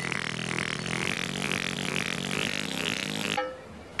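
Sound effect of the Teletubbies voice trumpet rising up out of the ground: a steady, buzzy, raspy sound that cuts off suddenly about three and a half seconds in.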